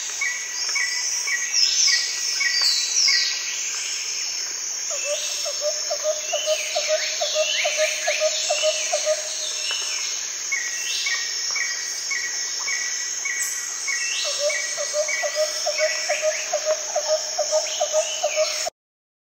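Forest ambience of birds and insects: a steady high insect drone with many bird calls over it, including trains of short repeated notes and falling whistles. A rapid pulsing lower call comes in twice, about five and fourteen seconds in.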